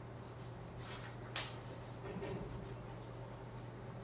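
Quiet room tone: a steady low hum, with a brief rustle just before a second in and one sharp click about a second and a half in.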